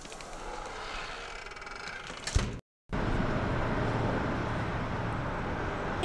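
Steady road noise of a car driving: an even rush of tyres and wind over a low engine hum, filling the second half. Before it comes a quieter rushing noise that ends in a single sharp thump, then a brief cut to silence.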